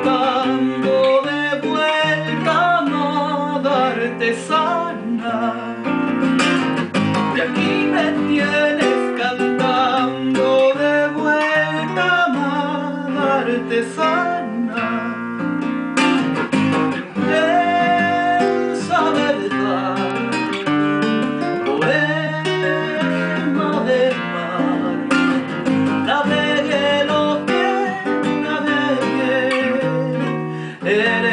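Nylon-string classical guitar played in a zamba rhythm, strummed and plucked, with a man's voice singing along at times.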